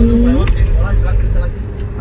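Low rumble of a moving train heard inside the carriage, easing off near the end. A long held note glides upward and stops about half a second in.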